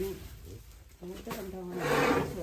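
A person's wordless voice, a drawn-out, falling sound starting about a second in, over the rustle of unhulled rice grains being scooped from a metal bin with a plastic scoop.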